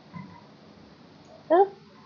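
Quiet room hiss in a pause, broken by a faint short tone just after the start and a brief voice-like sound about one and a half seconds in.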